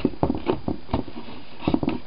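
A quick, irregular run of light taps, clicks and knocks from small objects being handled and bumped.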